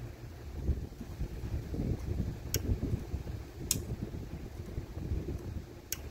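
Low, uneven rumble of a handheld camera's microphone being moved about, with three sharp clicks, the last near the end.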